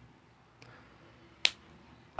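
A quiet pause holding one sharp click about one and a half seconds in, with a much fainter tick before it.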